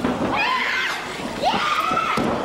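High-pitched women's yells and cries, with sharp thuds on the wrestling ring mat at the start and about one and a half seconds in.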